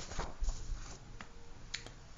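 Sheets of paper being handled and laid down: faint rustling with a few sharp taps and clicks.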